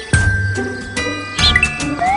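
Light, jingly background music with ringing bell-like notes over a low beat.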